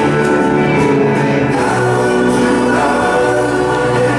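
Music: a choir singing long held chords.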